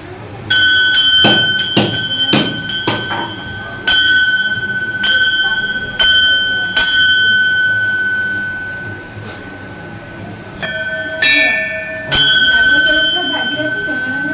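Temple bell rung during puja, struck repeatedly at an uneven pace with each strike ringing on, then left to ring out. About ten seconds in the ringing resumes, with a second, differently pitched bell struck a few times.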